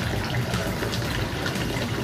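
Steady rushing background noise with no speech over it.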